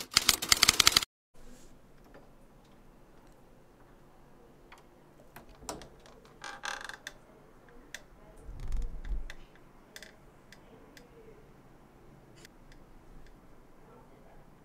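A brief loud edited sound effect over the opening second, then a quiet room with scattered small clicks, a short rustle and a low thud about eight and a half seconds in: handling noise from a handheld camera held close.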